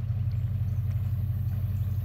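Motorboat engine running steadily, a low hum with a fast flutter, as the boat cruises along the river.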